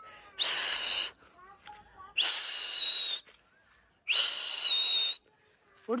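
A person whistling three long, breathy, high whistles, each about a second long with short gaps between. This is a pigeon keeper's whistle to send his pigeons up flying.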